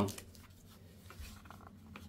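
Faint handling noise: hands shifting and holding a small radio transceiver, with a few light rustles and taps.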